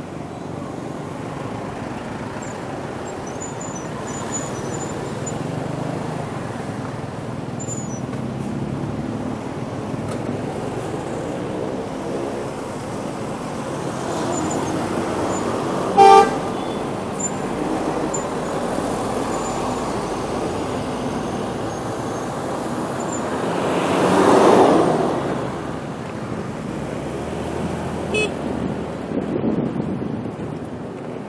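City street traffic heard from a moving motorcycle: a steady mix of engines and road noise, with one short vehicle horn toot about halfway through. Later a louder rush swells and fades over a couple of seconds.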